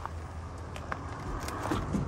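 Faint outdoor background noise: a steady low hum with a few small, scattered clicks.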